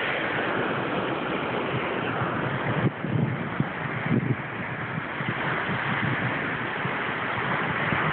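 Surf washing onto the beach, a steady rushing noise, with wind buffeting the microphone in low gusts.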